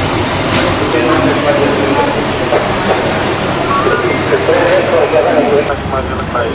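A large bus's diesel engine running steadily close by, with several people talking over it.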